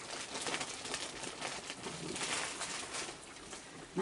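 A crowd of raccoons eating scattered dry food: a busy patter of crunching and small clicks, with a few faint low calls among them.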